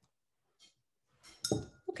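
Near silence, then shortly before the end a short, sharp clink with a brief ringing note, just before a voice starts speaking.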